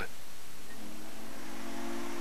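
Steady hiss of an old recording, with a faint low humming tone coming in about a second in and holding steady.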